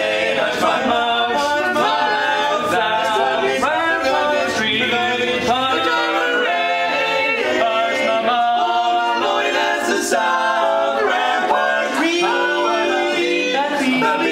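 Four-part a cappella barbershop quartet of male voices singing in close harmony, an up-tempo swing number, the parts moving together in chords.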